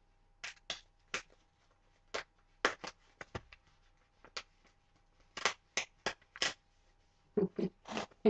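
A sheet of white paper being handled and folded: a series of short, sharp paper rustles and crinkles, about a dozen, spaced irregularly. Near the end there is a brief voice sound.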